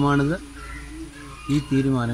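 A man speaking Malayalam, drawing out his vowels, with a pause of about a second in the middle.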